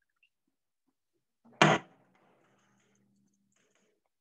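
A single sharp knock of kitchenware about one and a half seconds in, followed by a faint rush of water for about two seconds, as canned chickpeas are drained in a strainer.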